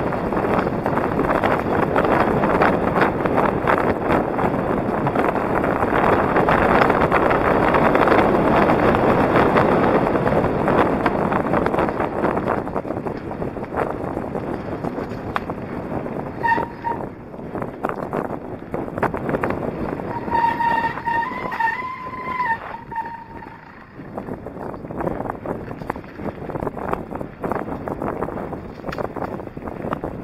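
Wind buffeting a helmet-mounted microphone over the rattle and crunch of a mountain bike riding a rough dirt and gravel trail, loud for the first dozen seconds and then quieter. A steady high squeal sounds briefly about halfway, and again for about three seconds a little later.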